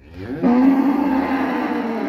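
A cow mooing: one long call that rises in pitch at the start, then holds steady.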